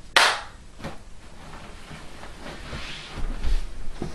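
A single sharp slap-like impact just after the start, then faint scattered knocks and a low rumble near the end.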